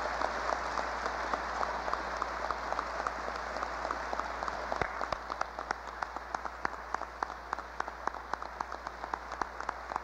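Audience applauding: dense clapping that thins out after about five seconds into more separate claps.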